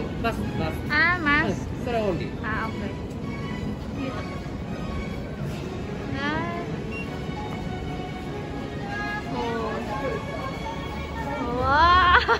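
People's voices, some high-pitched and swooping up and down, over faint background music, with the loudest voice rising near the end.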